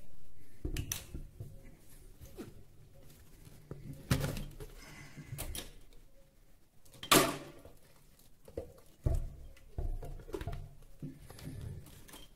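Plastic food-chopper bowl, lid and plastic water bottle being handled: a series of separate knocks and clunks, the loudest about seven seconds in. A little water is poured from the bottle into the bowl between them.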